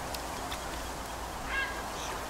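A single short bird call, like a waterfowl's honk, about one and a half seconds in, over a steady ambient hiss and low rumble.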